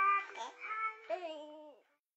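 A baby's high-pitched cooing and babbling over soft music, cut off shortly before the end.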